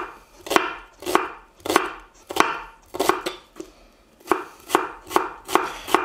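Chef's knife slicing halved sweet yellow onions on a wooden cutting board, in a steady rhythm of about two cuts a second.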